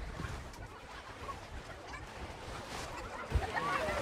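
Faint open-air seaside ambience: distant voices and a low wind rumble on the microphone, with one soft thump about three seconds in.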